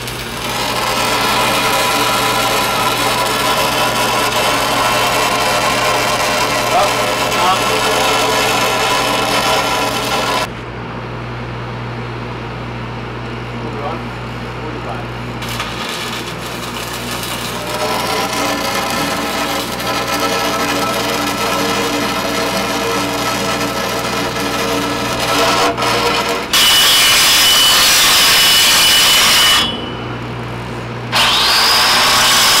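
Shielded metal arc (stick) welding on a steel pipe fitting: steady arc crackle and buzz that stops about ten seconds in and starts again about five seconds later. Near the end comes a few seconds of a louder, whining angle grinder.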